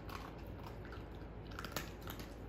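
A dog chewing a treat: small crunching clicks of teeth, with one sharper crunch near the end.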